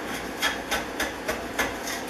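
Stanley No. 130 double-end block plane, its iron set in the bullnose end, taking about five short, quick strokes along the edge of a wooden board. Each stroke is a brief rasping scrape of the blade shaving the wood.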